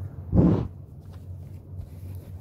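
A short, loud, muffled rub or knock of hands handling a phone right at its microphone, about half a second in, over a steady low hum.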